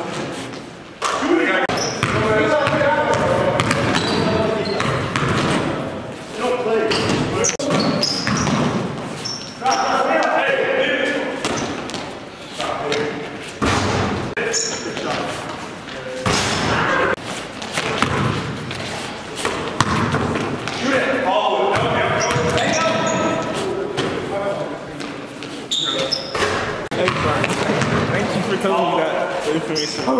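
Live sound of an indoor basketball game in a gymnasium: a basketball bouncing on the court floor with other short knocks, under players' and onlookers' indistinct voices and calls.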